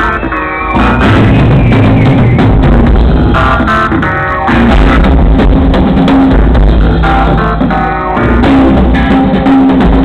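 A funk band playing live, with electric guitars over a drum kit and bass, loud.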